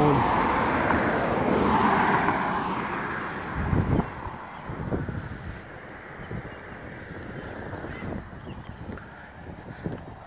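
Road and tyre noise of a moving car, loudest in the first few seconds and then fading to a low rumble, with a few soft knocks.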